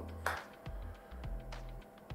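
Background music with a steady low bass line, and a sharp click about a quarter second in with a fainter click later: the plastic lid of a clamshell earbud charging case being snapped shut.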